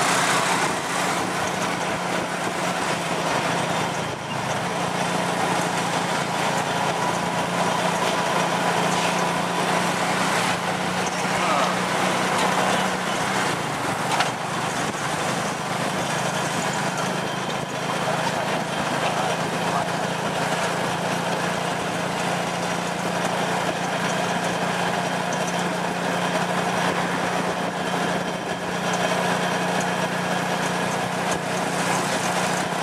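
Small motorcycle engine pulling a tuk-tuk, running steadily at road speed as heard from the open passenger carriage, over the noise of surrounding street traffic. The engine's pitch dips briefly about halfway through.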